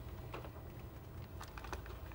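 Faint office room tone with scattered computer keyboard key clicks, a few coming in quick succession near the end.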